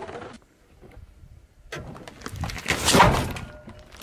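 Car tyre rolling over and crushing an object on asphalt: crackling starts about two seconds in and builds to a loud crunch about three seconds in, then fades.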